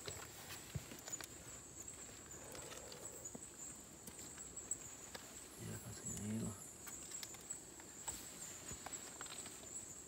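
Steady high-pitched chorus of night insects in rainforest, with faint rustles and clicks of movement through the undergrowth. A brief low murmur comes about six seconds in.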